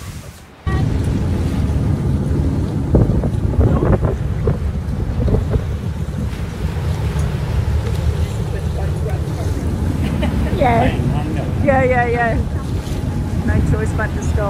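Wind rumbling on the microphone aboard a motor boat, over the low drone of the boat and the wash of the sea around it. A person's voice calls out twice near the end.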